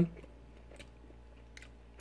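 Faint chewing of a soft pastry with the mouth closed, with a few small mouth clicks.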